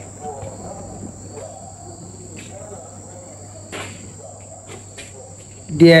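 A steady, high-pitched insect call, like a cricket chirring, runs under a low hum, with a few faint strokes of a marker writing on a whiteboard.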